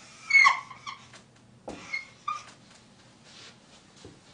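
Dry-erase marker squeaking on a whiteboard while a long downward arrow is drawn and a digit written. There is a strong squeak about half a second in, then several shorter squeaks around two seconds in.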